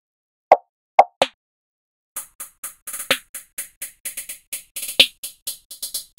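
Trap type-beat drum-machine pattern. A few sparse single hits open it, then from about two seconds in a rapid run of high ticking hi-hats comes in, with two louder hits about two seconds apart.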